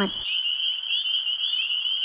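Night-time ambience: a steady, high-pitched insect-like trill.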